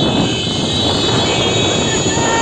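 Several motorcycles running close by at riding speed, a loud, steady engine noise.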